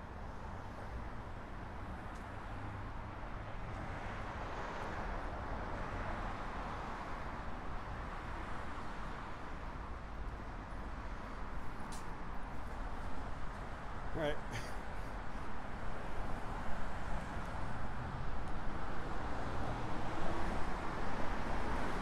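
City street traffic noise: a steady hum and rumble of passing cars, growing louder and more uneven in the last few seconds.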